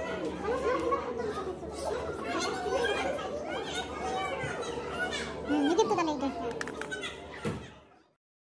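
Indistinct chatter of children and adults in a large, busy room, with children's voices overlapping and a few clicks. The sound fades out near the end.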